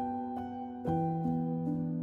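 Solo piano playing a slow, gentle arrangement, with held notes ringing over a low bass and a new chord struck a little under a second in.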